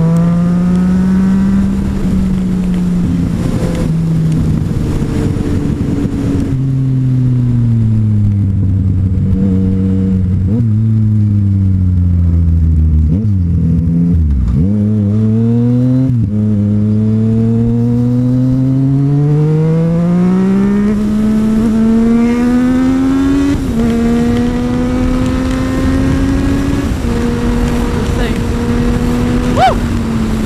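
Yamaha FZ-09's inline three-cylinder engine on a Black Widow carbon-fibre full exhaust with the baffle out, heard from the rider's seat at speed. The revs fall back early, then climb for a long pull in the second half, with stepped drops at the upshifts, and settle steady near the end.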